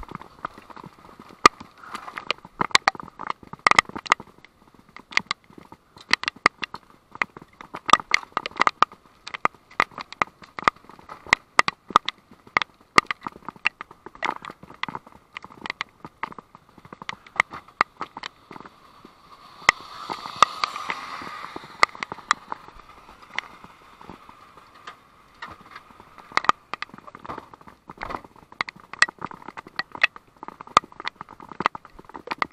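Raindrops striking close to the microphone: a dense, irregular patter of sharp taps, several a second, with a brief rustle about twenty seconds in.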